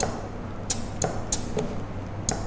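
About four short, sharp hissing clicks in the second half, from compressed air and the valves and push-in fittings of an electro-pneumatic trainer being worked by hand.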